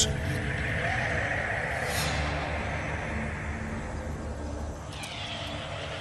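Steady hiss over a low rumble, with a brief high swish about two seconds in and the hiss dropping away about five seconds in.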